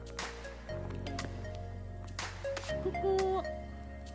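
Background music with sustained bass chords that change every couple of seconds, a melody line, and a percussive hit about every two seconds.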